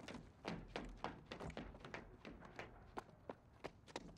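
Footsteps climbing wooden stairs: a quick, irregular run of knocks and scuffs.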